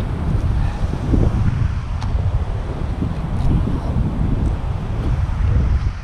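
Strong wind buffeting the camera microphone: a loud, uneven, gusty rumble.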